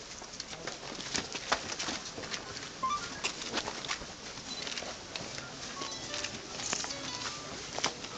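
Ambience of a large crowd on the move: a steady shuffle and murmur, crossed by many scattered sharp clicks and a few short high chirps.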